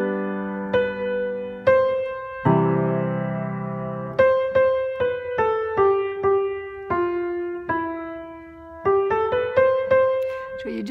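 Gebr. Zimmermann piano played: a melody picked out one note at a time, stepping down the scale and climbing back up near the end. Low chords sound near the start and again about two and a half seconds in.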